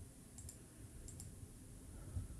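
Near silence: low room tone with a couple of faint computer mouse clicks, about half a second and a second in.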